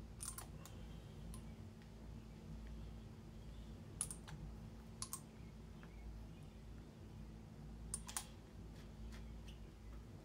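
Faint, scattered small clicks and taps as a small acrylic ink bottle and its applicator are handled, over a low steady hum. There are a handful of sharp ticks: one near the start, two a second apart around the middle, and a quick pair near the end.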